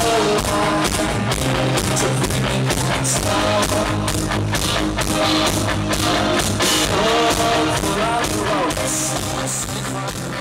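Live rock band playing loudly: electric guitars over a steady drum beat.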